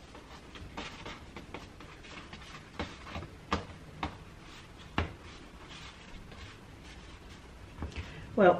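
Hands shaping soft bread dough on a baking tray: faint rustling and rubbing, with four sharp little taps against the tray between about three and five seconds in.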